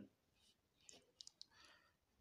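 Near silence, broken about a second in by a few faint ticks and a soft scratch of a pen writing on paper.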